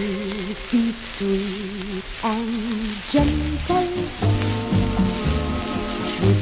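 Latin dance band cha-cha playing from a Columbia 78 rpm shellac record, with surface hiss and crackle throughout. A soft held melody line wavers with vibrato over almost no bass, and the full band with bass and rhythm comes back in about halfway through.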